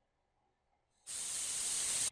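Simulated fizzing of sodium reacting with water: a steady high hiss that starts about halfway through, after a second of silence.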